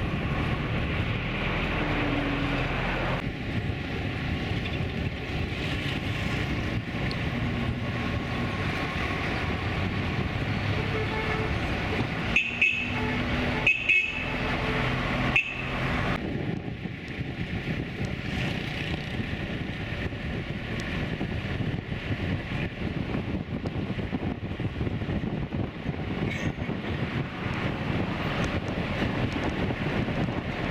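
Open-top classic Chevrolet driving along, with steady engine, road and wind noise. Three short car-horn toots come about halfway through.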